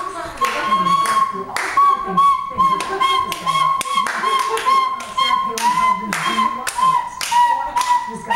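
A child blowing one shrill note on a plastic recorder again and again in short breaths; the note drops slightly about halfway through. Hand claps sound throughout.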